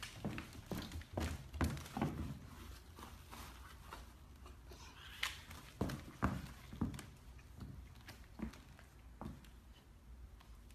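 Footsteps of a bull terrier puppy and the person following it across a hard floor: irregular soft knocks and clicks, busiest in the first couple of seconds, then sparser.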